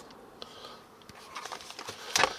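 Faint clicks and light rustling of takeout food containers being handled and opened, with a small run of ticks near the end.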